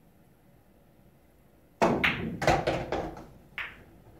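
Pool shot hit hard: a sharp cue strike on the cue ball about two seconds in, then a quick run of clacks and knocks as the balls hit each other and the cushions on a two-rail kick, and one last knock about a second and a half later.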